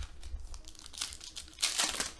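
Crinkling of foil trading-card pack wrappers being handled, with a few light rustles and a louder burst of crinkling near the end.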